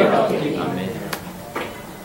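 A voice fading into the echo of a large room in the first half second, then low room sound with two faint clicks.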